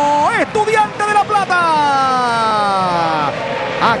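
A man's drawn-out shout over the final whistle. A held high note lifts briefly, then a long unbroken call falls steadily in pitch for about two seconds before ordinary speech resumes near the end.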